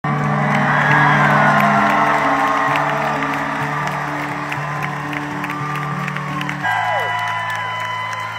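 An arena crowd cheers, whoops and whistles over slow, sustained chords from the live band at the close of a song. Near the end the music settles onto one held chord.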